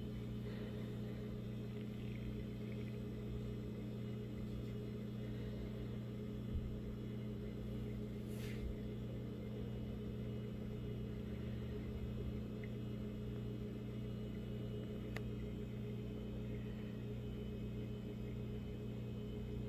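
Steady low machine hum, with a faint knock about six and a half seconds in and a brief rush of noise about eight and a half seconds in.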